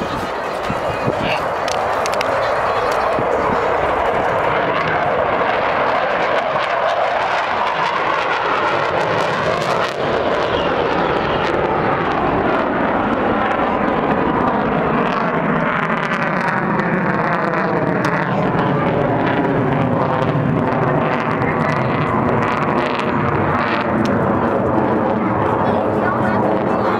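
Loud, steady jet noise from a military jet flying high overhead. In the second half a swirling sweep slides slowly down in pitch through the noise as the jet passes.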